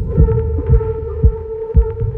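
Film-score sound design: a steady droning tone with deep low thumps about twice a second.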